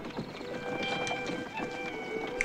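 A horse's hooves clip-clopping as it pulls a carriage, under background music with long held notes.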